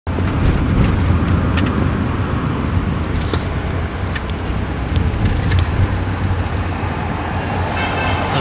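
Steady low rumble of a car's engine and road noise heard inside the cabin while driving, with a few faint ticks.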